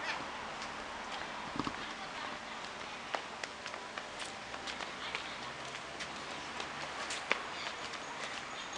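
Footsteps on a paved path: light, irregular taps over a steady hiss of outdoor background noise.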